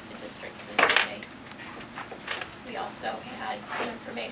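A brief, sharp clink and clatter of a small hard object about a second in, the loudest sound here, with faint talk around it.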